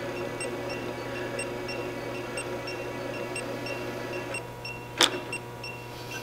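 Electric height-lift motor of an ADAS calibration frame running steadily as it raises the target crossbar, with faint ticks about twice a second. A sharp click comes about five seconds in.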